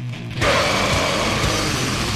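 Grindcore band playing an instrumental passage: a thinner, quieter stretch of distorted guitar and bass, then the full band with drums comes in loud about half a second in.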